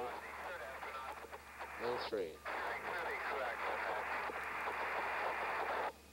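Two-way radio transmission: a steady narrow-band hiss with a voice coming faintly through it, which cuts off suddenly near the end as the transmission drops.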